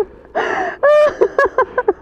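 A woman's breathy emotional gasp, followed by several short pitched voiced sounds, some coming in quick succession near the end.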